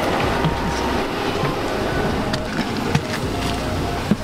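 Steady low rumble of a bus's engine and interior noise while footsteps climb the boarding steps and move down the aisle, with a few short knocks, the sharpest about three seconds in. Faint background music plays over it.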